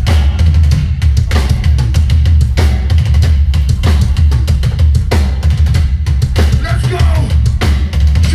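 A hardcore punk band playing live at full volume: distorted guitars and bass over fast, hard-hit drums, the song having just kicked in.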